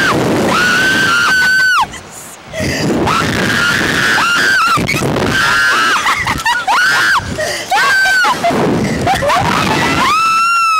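Two women screaming and laughing on a reverse-bungee slingshot ride as it flings and flips them: a string of long, high-pitched screams, one after another, with a short break about two seconds in.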